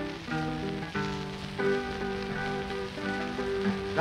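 Instrumental break of a 1920s blues 78 rpm record, a run of pitched notes played between sung lines, with steady shellac surface noise underneath.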